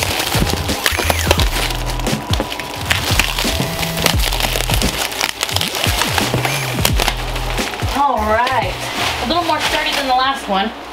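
Background music with a steady bass line over the crackle and rustle of plastic stretch wrap being pulled and torn off a pallet of cardboard boxes. The music stops near the end, where a woman's voice is heard.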